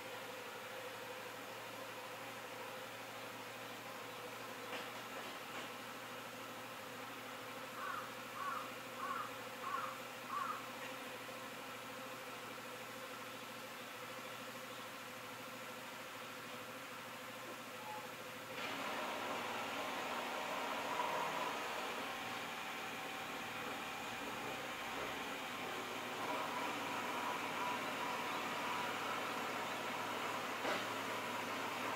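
Steady outdoor background with a faint low hum. About eight seconds in, a bird calls five short chirps in quick succession. About two-thirds of the way through, a louder steady rushing noise sets in and holds.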